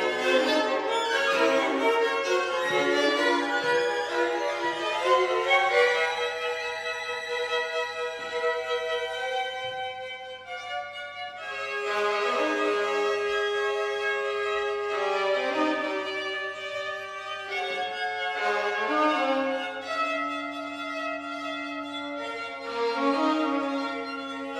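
A string quartet of two violins, viola and cello playing live: many fast overlapping bowed notes in the first few seconds, then quieter, longer held notes with a sustained lower line from about ten seconds in.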